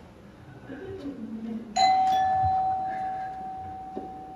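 Doorbell: a single chime about two seconds in that rings on as one steady tone and slowly dies away, announcing a visitor at the door.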